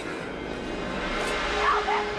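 Film soundtrack: a tense score with one note held steady through the second half, and a person's short high cries near the end.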